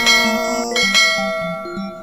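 Bright bell chimes in end-screen music: two strikes about a second apart, each ringing on and slowly fading, with softer short notes after.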